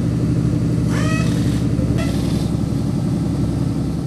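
An engine runs steadily at idle, a constant low hum. Two brief high squeaks rise in pitch about one and two seconds in.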